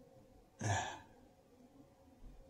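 A person sighing once, a short breathy exhale with a little voice in it, about half a second in.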